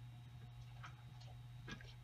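A few faint ticks of small glass seed beads being picked up on a beading needle, over a steady low hum.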